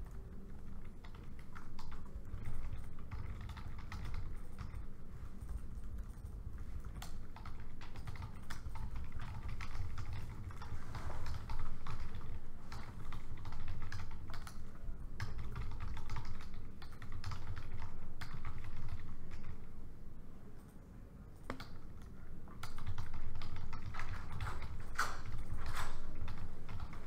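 Typing on a laptop keyboard: irregular runs of light key clicks, with a brief lull near the end, over a steady low room hum.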